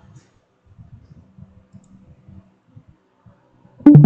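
Faint, irregular clicking of a computer mouse scroll wheel, with a faint low hum briefly in the middle.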